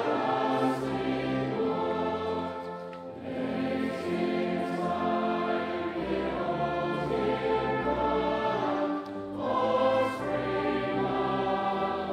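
Large congregation singing a Christmas carol together, accompanied by a brass band, with short lulls between phrases about three and nine seconds in.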